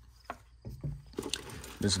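Faint scattered taps and rustles of hands handling unboxing packaging: a sanding disc laid down and a reach into a cardboard box for a plastic-wrapped item.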